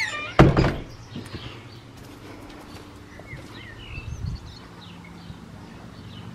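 A door thunks once, sharply, about half a second in. After it come faint bird chirps and a low steady hum.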